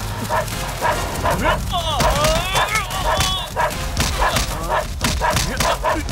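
Film chase soundtrack: short, bark-like vocal stabs repeating about twice a second, joined about two seconds in by sliding, wavering yells.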